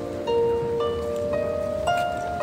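Small lever harp being plucked: a slow melody of single notes, a new note about every half second, each left to ring.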